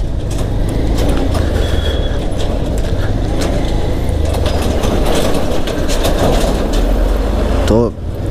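Motorcycle running at low speed on a rough dirt road, with steady deep wind rumble on the microphone and scattered small clicks and knocks.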